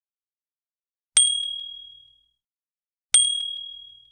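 Two identical bright, high ding sound effects, two seconds apart, each struck sharply and ringing away over about a second.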